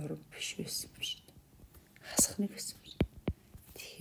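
Quiet, half-whispered muttering from a person talking under their breath, with two short sharp clicks about three seconds in.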